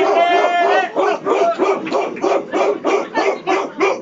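A man's voice: one drawn-out cry, then a fast, even run of short yelps or barks, about three a second, like a dog imitation or bursts of laughter.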